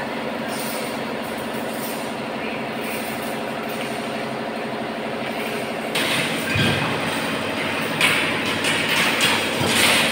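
Workshop machinery running with a steady hum. About six seconds in, louder irregular metallic rattling and clinking of galvanized wire mesh being handled joins in.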